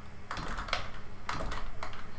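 Typing on a computer keyboard: a run of separate, irregularly spaced key clicks.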